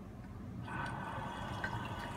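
Tap turned on about two-thirds of a second in: a steady stream of tap water runs from the faucet's diverter valve and splashes into a ceramic washbasin.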